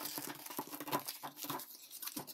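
Old screen-printing mesh, caked with drawing fluid and screen filler, being peeled off a wooden frame and bunched up by hand: quiet, irregular rustling and crackling of the fabric.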